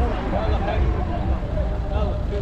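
Men's voices chatting at a distance, with no clear words, over a steady low rumble.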